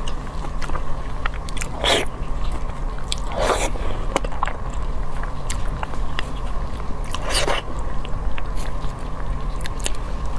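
Close-miked eating: a person biting and chewing soft, sticky food, with small wet clicks throughout and three louder wet mouth sounds about 2, 3.5 and 7.5 seconds in, over a faint steady hum.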